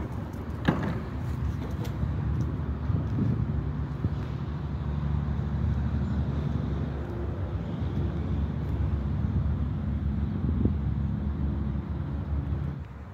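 A motor vehicle's engine running, a steady low hum, with one sharp click a little under a second in.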